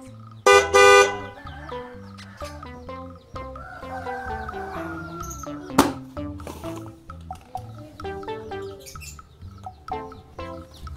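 A cartoon bus-horn sound effect honks twice in quick succession about half a second in, followed by light, bouncy children's background music.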